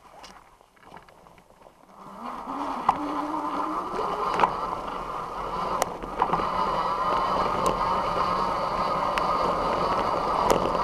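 Voltbike Yukon 750 fat-tire electric bike rolling downhill on a gravel road. Its tyre and rattle noise builds about two seconds in as it picks up speed, with a hum that climbs in pitch and sharp clicks of gravel.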